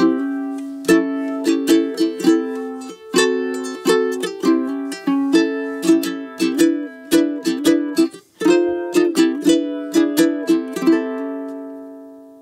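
Kamaka HF3 koa tenor ukulele in high-G tuning, strummed in a rhythmic chord pattern. There is a short break a little past the middle, then a final chord left to ring out and fade.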